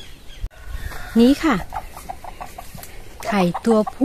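Chickens clucking: a quick run of short clucks, about six a second, for about a second and a half, between bits of a woman's speech.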